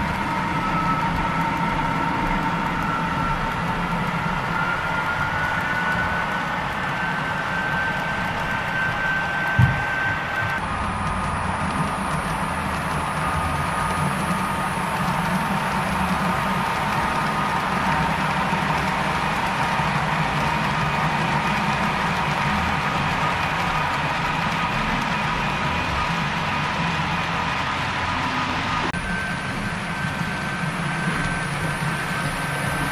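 Model freight train running on layout track: a steady mechanical hum with a high whine that rises slightly in pitch, and a single knock about ten seconds in.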